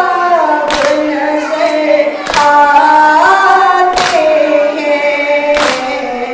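Voices singing a nauha, a Muharram lament, in long held melodic lines. Four sharp strikes land about a second and a half apart, typical of the hands-on-chest beating (matam) that keeps time with a nauha.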